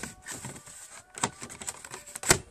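A few light plastic clicks and taps as the headlight-switch panel and dash trim are handled, the sharpest a little over a second in.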